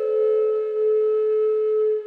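A Native American flute holding one long, steady note, which starts to fade right at the end.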